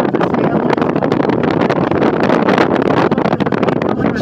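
Steady rushing noise inside an aerial tramway cabin travelling along its cables, with wind on the microphone.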